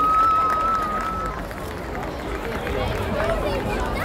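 Crowd of spectators chattering in an open square, many voices overlapping. A single long, steady high note, held over from before, stops about a second in.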